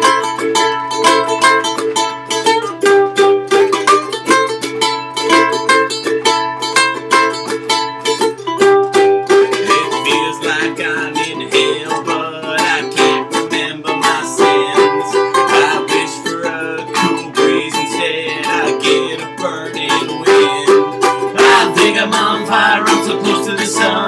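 Two ukuleles strummed together in a steady rhythm, an instrumental break with no singing.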